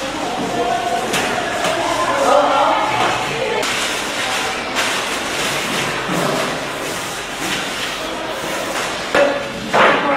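Classroom room sound during cleaning: indistinct voices in the background with scattered knocks and thumps of desks and furniture being handled.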